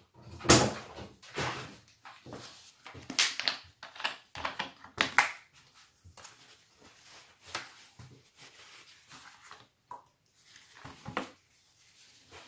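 Irregular handling noises: a series of short knocks and rustles as a plastic bottle of turpentine is set down on a wooden workbench and uncapped, and paper towel is pulled off a roll. The loudest knock comes about half a second in.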